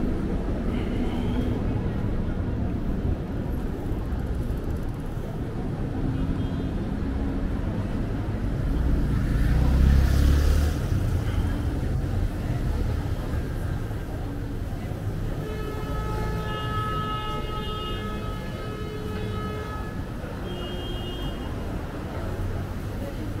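Night city street ambience: a steady low traffic rumble, with a vehicle passing about halfway through. Faint sustained tones join in for a few seconds later on.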